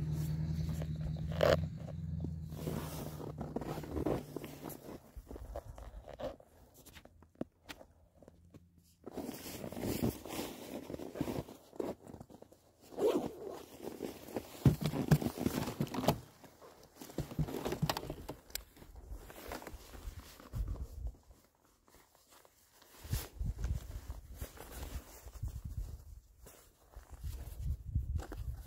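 Rustling and scraping of a winter riding suit and a handheld phone being moved about, with crunching steps in snow, in short irregular spells. A low steady hum stops about four seconds in.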